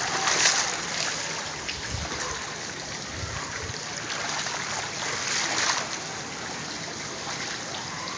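Shallow floodwater running and splashing over a paved floor, with a few louder splashes near the start and about five and a half seconds in.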